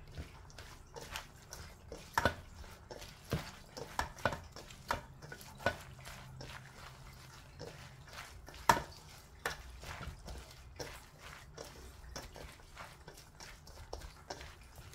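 Gloved hand tossing wet, seasoned julienned radish in a stainless steel bowl: soft irregular squelches and clicks, the sharpest about nine seconds in.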